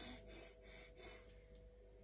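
Near silence, with a few faint breaths through the nose in the first second.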